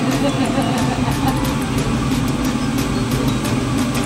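Steady low hum of a kitchen range hood fan running over the stove, with faint talking in the background.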